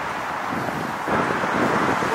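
City street traffic noise with wind on the microphone, a steady rush that grows louder about a second in.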